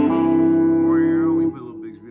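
Clean electric guitar with P90 pickups finishing a short picked phrase on one held note that rings for about a second and a half, then is cut off sharply. It is played as the twangy 'high lonesome' sound that is typical of an old Gretsch.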